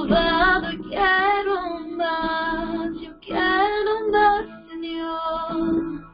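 A female voice singing a worship song over guitar accompaniment, in two sung phrases with a short break between them.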